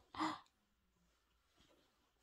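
A single short, breathy sigh-like exhale near the start, faint and lasting under half a second.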